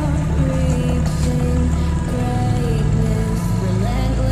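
Background music: a song with a heavy, steady bass and a stepping melody line.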